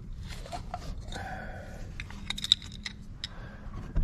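Oil filler cap being twisted loose and lifted off a light aircraft engine's filler neck: faint scraping, then a quick cluster of light clicks about two seconds in.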